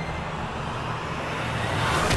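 A dramatic swelling whoosh sound effect over a low rumbling drone, growing steadily louder and brighter as it builds.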